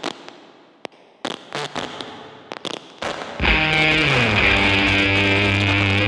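Background music: a few scattered sharp hits, then about halfway through a loud sustained chord comes in, sliding down in pitch as it starts, and holds.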